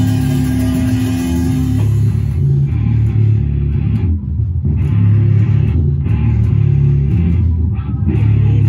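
Small rock band playing live through amplifiers: electric guitar and bass guitar with drums, heavy in the low end. A held note cuts off about two seconds in, as picked up by a phone's microphone.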